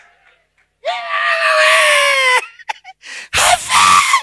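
A man screaming into a microphone: one long, high cry of about a second and a half that falls slightly in pitch, followed near the end by a second loud shout.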